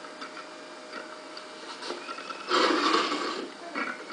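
Small clicks and scrapes of a modelling tool working clay pressed into a plaster ocarina mould, with a louder, noisier scrape lasting about a second a little past the middle.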